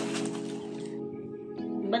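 Background music starting with a bright swish over the first second, then a held chord.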